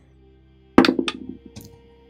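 Soft background music, with a sharp clatter of dice rolled on the table about a second in that dies away within half a second.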